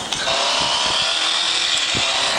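A small motor whirring steadily, starting a moment in.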